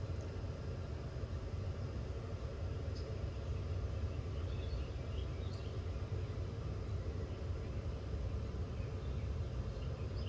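Steady low rumble of outdoor background noise, with a few faint high chirps about three to six seconds in.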